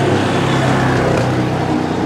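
A motor vehicle running close by on the street: a steady engine hum with road noise, easing slightly near the end.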